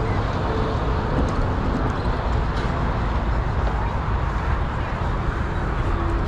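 Steady outdoor background noise: a continuous low rumble with an even hiss above it, and faint voices of people nearby.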